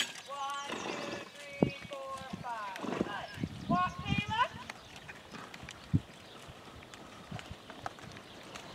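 Hoof thuds of a pony moving on arena sand, with two runs of high calls whose pitch wavers, in the first half.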